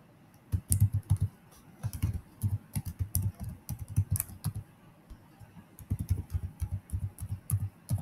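Typing on a computer keyboard: quick runs of keystrokes starting about half a second in, with short pauses near one and a half and five seconds.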